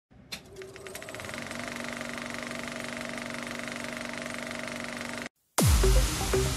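Film-projector sound effect: a click, then a mechanical clatter that speeds up into a steady whirring rattle with a hum, cutting off suddenly about five seconds in. Just before the end a deep boom begins the music.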